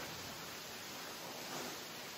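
Steady, even hiss of rain falling on the building, heard from inside.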